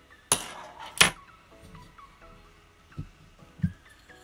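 Metal clicks and clinks from handling the exhaust spring, aluminium manifold and tuned pipe of a nitro RC engine as they are taken apart: two sharp clicks in the first second, then a couple of soft knocks near the end.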